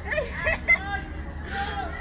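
Several people's voices talking and calling out at once, with one sharp, short smack about two-thirds of a second in.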